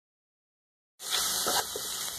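Silence for the first second, then onion, garlic and tomato frying in oil in a pot: a steady sizzling hiss that starts suddenly as a wooden spoon stirs them.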